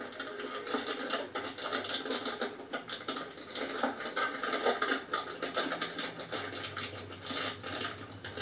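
Foil-plastic LEGO Minifigures blind-bag packets crinkling and rustling continuously as a hand rummages through the box and squeezes them, feeling for which figure is inside.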